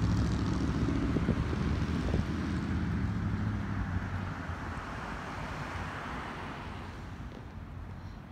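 A passing engine's low drone, loudest at first and fading gradually away.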